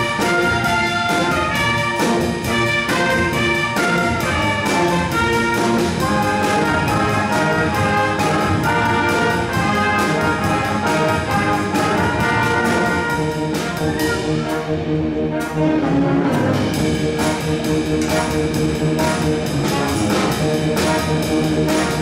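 High school jazz band playing: trumpets and other brass carry the tune over a drum kit keeping a steady beat. The drums' high sizzle drops out for a moment about two-thirds of the way through, then the full band returns.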